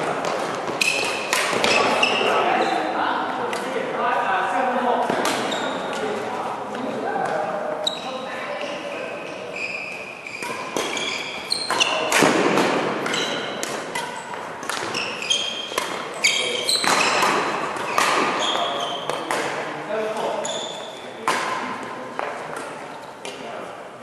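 Badminton doubles rally: rackets striking the shuttlecock in repeated sharp cracks, with short high squeaks of court shoes on the mat and background voices in a large echoing hall.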